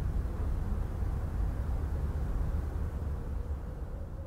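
A low, steady rumble with a faint steady hum held above it. It eases off slightly near the end.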